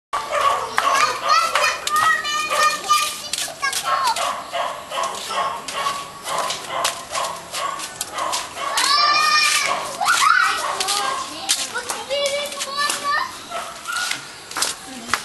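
Children's and adults' voices chattering and calling out, with a loud high squeal about nine seconds in, over many sharp clicks.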